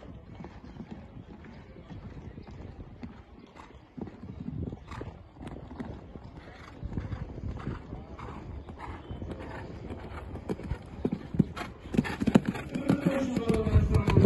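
Hoofbeats of a show-jumping horse cantering on a sand arena, a run of soft repeated thuds that grows louder near the end as the horse comes close.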